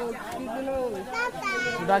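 People talking, with a higher-pitched voice, likely a child's, about a second in.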